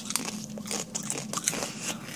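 Dry, crisp crunching and crackling of toasted tortilla chips: a quick, irregular run of small sharp cracks.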